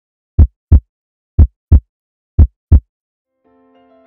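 Heartbeat sound effect: three deep double beats, lub-dub, about one a second. Soft keyboard music begins faintly near the end.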